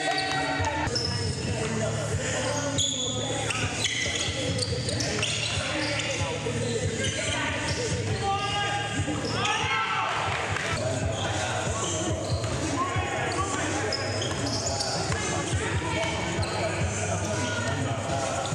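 Live basketball game sound in a gym: sneakers squeaking on the hardwood floor, the ball bouncing, and players' indistinct voices, all echoing in the large hall over a steady low hum.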